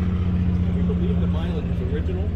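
A nearby engine idling: a steady low hum with an even pitch, with faint voices in the background.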